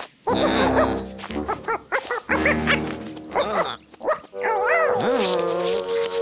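Cartoon animal characters making short wordless vocal sounds that swoop up and down in pitch, over background music.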